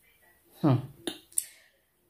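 A woman's short falling "hmm", followed by two sharp clicks about a third of a second apart.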